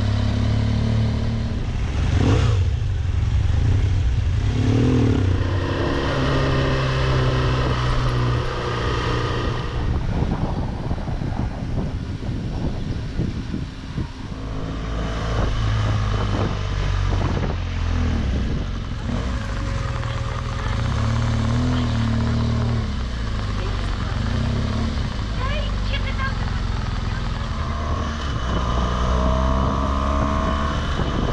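BMW R1200GS flat-twin engine running as the motorcycle is ridden through town streets, its pitch shifting several times with the throttle.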